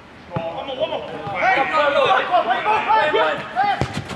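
Footballers' voices shouting and calling out, loud and overlapping, with a sharp thud of the ball being kicked near the end.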